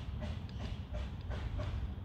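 Steady low background rumble with a few faint clicks scattered through it.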